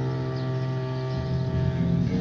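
1968 television incidental music: a new chord comes in right at the start and is held, over a steady low note.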